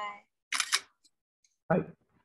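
Voices on a video call saying "bye" in short, separate snatches, with a brief hissing burst about half a second in.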